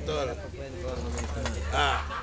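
Casual conversation among several people close to the microphone, with a louder voice near the end, over a low steady hum.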